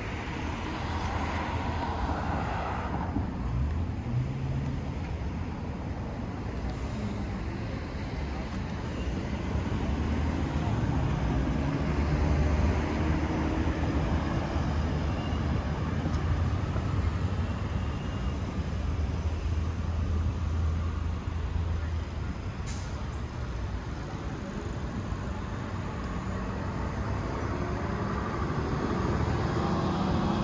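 Street traffic at an intersection: vehicle engines and tyre noise with a steady low hum, getting louder in the middle as traffic passes close by.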